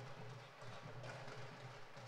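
Dhol folk drums beaten by a troupe of players in a quick, steady rhythm.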